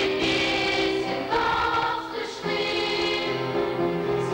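A girls' choir singing a slow piece in held notes. The chord changes about a second and a half in, and again after a brief lull a little past two seconds.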